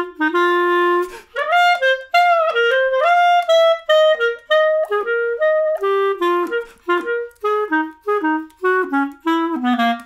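Solo clarinet playing an embellished, swung jazz-waltz melody in short, separated notes, with one longer held note near the start and a phrase that steps down to a low note near the end.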